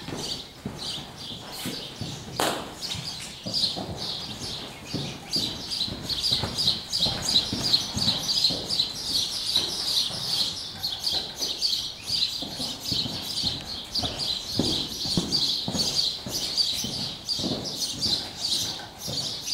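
Hooves of a loose horse trotting and cantering on soft arena footing, irregular dull thuds with one sharper knock about two and a half seconds in, over constant fast chirping of birds.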